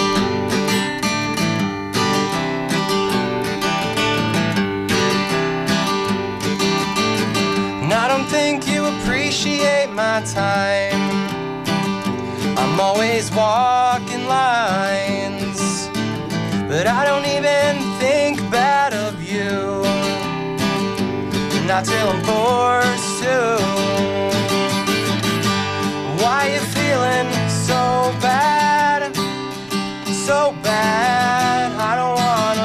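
A solo acoustic guitar strumming chords, played live. From about eight seconds in, a melody line that glides and wavers in pitch rides above the strumming.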